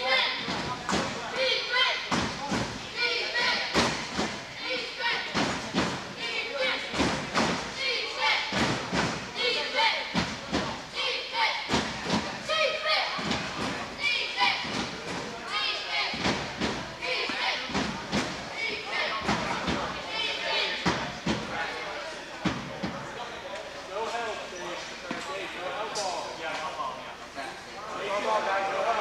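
Wheelchair rugby play in an echoing gym: repeated sharp knocks and thumps, about one or two a second, from the ball bouncing on the floor and the rugby wheelchairs knocking together, over players and onlookers talking and calling out.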